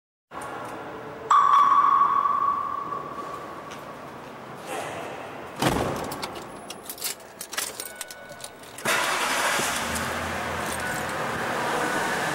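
Car sound effects opening a rap track: a ringing chime about a second in that fades away, a heavy thump like a car door shutting near the middle, jangling keys, then a steady rushing noise of a car running from about nine seconds.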